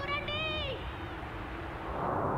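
A brief high-pitched, wavering voice-like cry in the first part of the second, followed by a low steady rumble.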